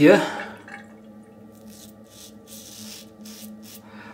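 Several faint drips of water falling into a sink from a just-used tap, over a low steady hum.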